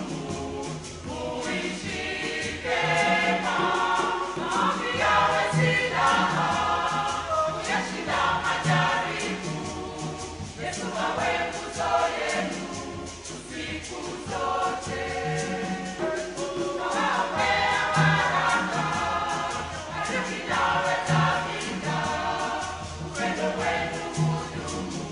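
A church choir singing a gospel-style wedding song in parts, phrase after phrase, with a regular low beat underneath that is likely the hand drums.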